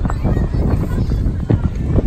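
Footsteps knocking irregularly on wooden pier decking, several a second, over a rumble of wind on the microphone.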